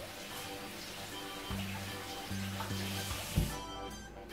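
Tap water running into a kitchen sink as cut eggplant pieces are rinsed, a steady hiss that stops shortly before the end, just after a low knock. Background music with a repeating bass line plays throughout.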